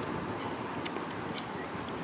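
Steady outdoor background noise, with two faint short clicks a little under a second in and again about half a second later.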